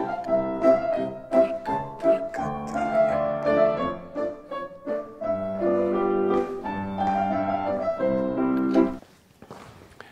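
Solo piano music with a melody over chords, stopping about nine seconds in.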